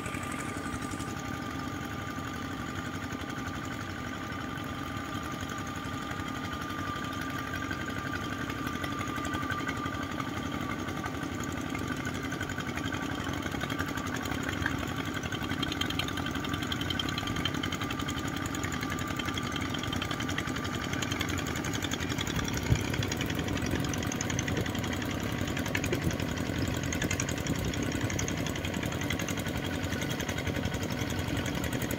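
Small single-cylinder diesel engines of paddy-field mud levelers running steadily under load as they drag leveling boards through rice-paddy mud that has begun to dry and turn sticky. The engine sound grows somewhat louder in the second half, and there is a single sharp click a little after twenty seconds in.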